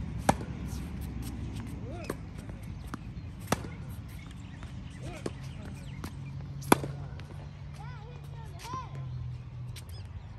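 Tennis rally: sharp racket-on-ball hits about every one and a half seconds, the louder ones alternating with softer ones from the far end of the court. Five hits, the last about two thirds of the way in.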